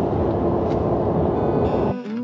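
Steady low road and engine rumble inside a car's cabin while driving. Guitar music fades in near the end as the rumble cuts off.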